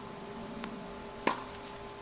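A tennis racket striking the ball on a groundstroke: one sharp hit about a second and a quarter in, with a much fainter tick about half a second before it. An excellent sound, the sign of solid contact with good racket-head speed.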